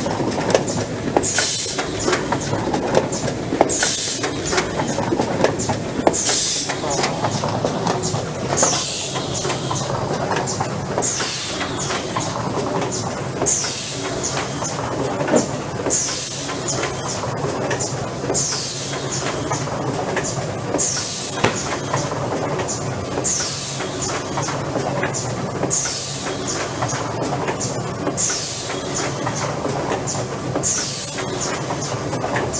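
AFM 540A case-making machine running in steady production: a continuous mechanical clatter with a short, sharp high hiss repeating about every two and a half seconds, one per machine cycle.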